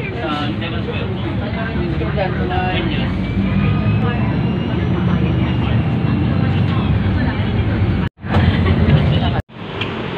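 Steady low rumble of a city bus's engine and road noise heard from inside the cabin, with faint voices in the first few seconds. About eight seconds in it cuts off abruptly, and a louder burst of outdoor noise follows between two sudden cuts.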